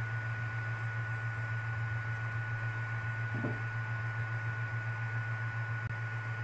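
A steady low hum with a thin, steady high whine above it, running evenly; a faint brief sound about three and a half seconds in.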